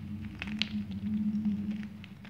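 Gym chalk crumbling between the fingers: a few short, light crackles and crunches as pieces break and powder falls, over a steady low hum.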